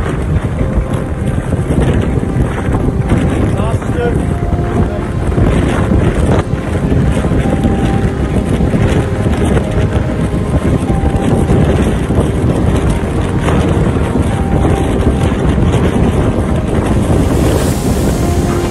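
Storm wind blasting across a phone microphone on a ship's open deck: a loud, steady rushing noise with gusts.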